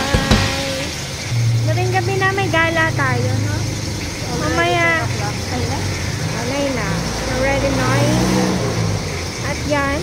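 People talking over the low, steady hum of a car engine idling.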